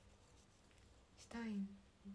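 Low room tone for about a second, then a woman speaks a short phrase.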